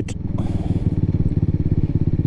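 A 2003 Baimo Renegade V125 custom's small 125cc motorcycle engine running steadily at low revs, with an even pulsing rumble, as the bike slows for a junction.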